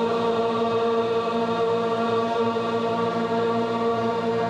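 A steady chant-like drone held on one note with rich overtones, unbroken throughout.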